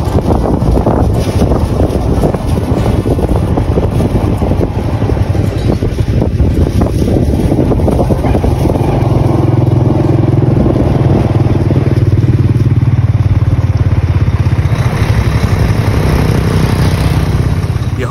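A vehicle on the move: loud, steady engine and road noise. About nine seconds in it settles into an even, deeper engine drone.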